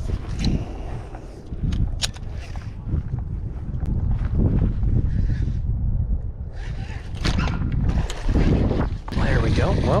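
Wind buffeting the microphone as a steady low rumble, with a couple of sharp clicks in the first two seconds.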